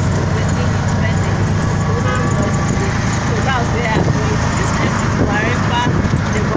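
Steady low rumble of a vehicle's engine and road noise, heard from inside the passenger cabin, with people's voices over it.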